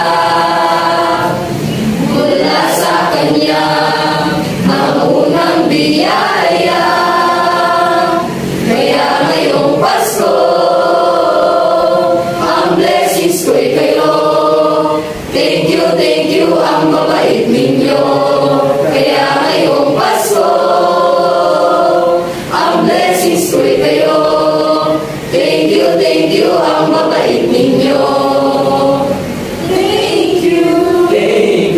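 A mixed choir of young male and female voices singing together in long sustained phrases, with brief breaks between phrases every few seconds.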